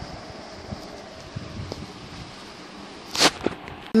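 Faint handling of a steel pot with a steel plate for a lid as it is set on a refrigerator shelf: a few soft knocks over a low steady background, with a short rush of noise about three seconds in.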